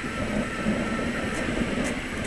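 Low rumble of passing vehicles that swells through the middle, over a steady city hum.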